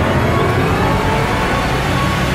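Film soundtrack sound design: a slowly rising, siren-like tone over a steady low drone.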